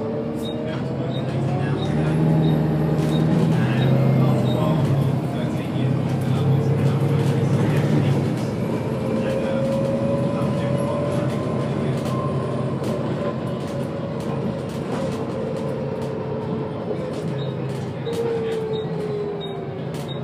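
Volvo B7TL double-decker bus heard from inside while moving: its diesel engine pulls hard, loudest in the first several seconds, with engine notes that rise and then drop as it works through the gears and eases off.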